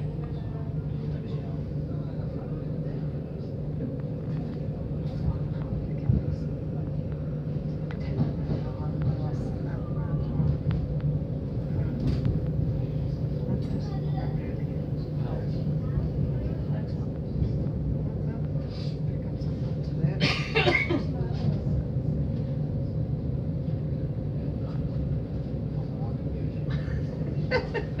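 Interior running noise of a Thameslink Class 700 electric multiple unit in motion: a steady low hum over the rumble of wheels on the track.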